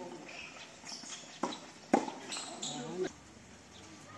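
Tennis rackets striking the ball during a doubles rally: sharp pops, two of them about half a second apart a little past the middle, the second the loudest. Brief voices follow.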